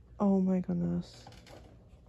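Two short hummed notes in a person's voice in the first second, the first slightly falling and the second level, like an "mm-hm".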